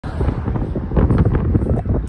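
Wind buffeting the microphone: a loud, gusting low rumble.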